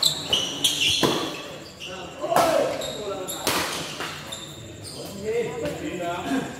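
Badminton rally in a sports hall: rackets striking the shuttlecock and shoes squeaking on the court, with a string of sharp hits early on and two loud hits about two and three and a half seconds in. Voices follow as the rally ends.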